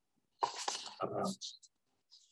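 A brief, muffled burst of a person's voice and breath, starting suddenly about half a second in and lasting about a second.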